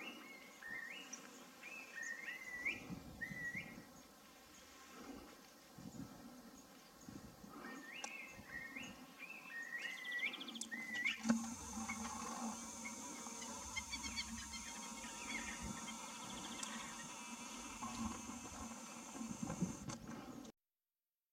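A songbird gives two phrases of short, clear whistles, each note dipping and then rising in pitch. About eleven seconds in, the song gives way to a steady high hiss.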